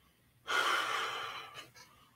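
A man breathing out once through the mouth, a long rush of breath starting about half a second in and fading away over about a second.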